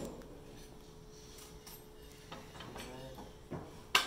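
Light metal handling at a table saw's throat plate, ending in a single sharp metal clack just before the end, over a faint steady hum.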